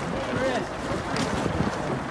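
Indistinct talking over steady wind noise on the microphone.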